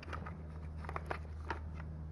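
Faint handling noise as a small vacuum cleaner's motor is lifted out of its plastic housing, its wires pulled free: a few small plastic clicks and rustles over a steady low hum.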